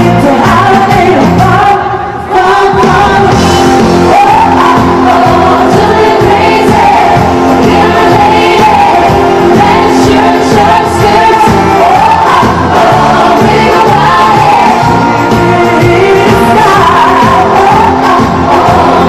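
Live pop song in concert: female lead vocals sung into handheld microphones over a full band, with a short break in the music about two seconds in.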